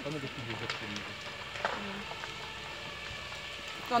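Burning house roof crackling with an even hiss, with two sharp pops, one early and one near the middle. Faint voices murmur underneath.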